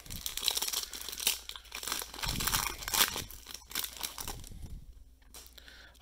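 Foil wrapper of a Donruss Optic basketball trading-card pack being torn open and crinkled. It crackles densely for about four seconds, then fades to faint rustling.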